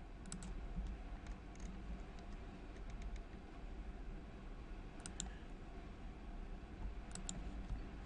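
Computer mouse buttons clicking, mostly in quick pairs: about half a second in, about five seconds in and about seven seconds in, with a few fainter clicks between, over a low steady hum.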